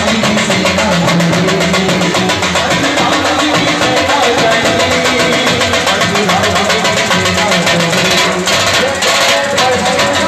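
Loud procession band music: a large drum beats a fast, steady rhythm under melodic instruments, with crowd voices mixed in.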